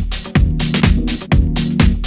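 Latin house dance music, instrumental at this point: a kick drum on every beat, about two a second, with crisp hi-hats over a steady bass line.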